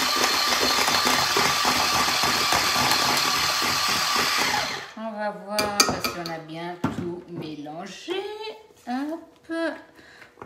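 Electric hand mixer running steadily, its beaters whisking waffle batter in a stainless steel bowl, then switched off suddenly about five seconds in. A few sharp clicks follow.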